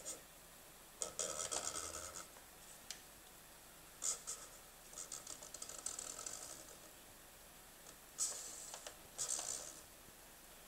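NAO humanoid robot's arm joint motors whirring in short bursts while its hand drags a whiteboard marker across paper, the marker tip scratching with each stroke. There are about five separate bursts of a second or less, with quiet gaps between strokes.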